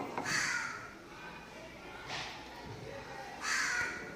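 A crow cawing three times, in harsh calls near the start, in the middle and near the end.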